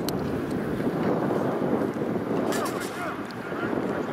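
Steady wind noise on the microphone, with faint distant voices calling out about two and a half seconds in.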